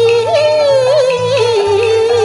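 Cantonese opera music: a woman sings one long, ornamented melodic line that drifts slowly down in pitch, over the accompanying band's low notes.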